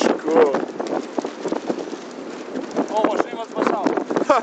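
Men's voices in short exclamations, over a steady rush of wind on the microphone, with a few sharp knocks.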